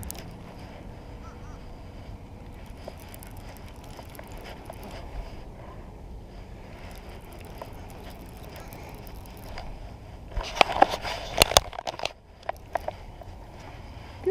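Hands handling a round baitcasting reel and rod: a faint steady background for most of the stretch, then a cluster of sharp clicks and knocks about ten seconds in, with a few lighter clicks after.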